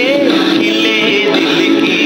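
A man singing over the backing track of a Hindi film song, with sustained accompaniment chords beneath his voice.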